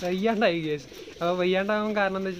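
A man talking, speaking Malayalam, with a short pause about a second in.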